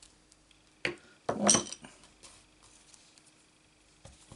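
Clear acrylic stamp block handled on a hard craft surface: a sharp tap about a second in, then a louder, brief clattering clink, followed by a few faint ticks.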